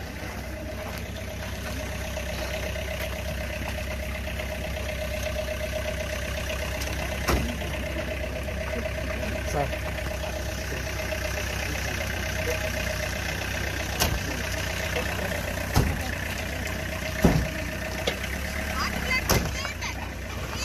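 A vehicle engine idling steadily, with crowd voices around it. A few short, sharp knocks come at intervals through it.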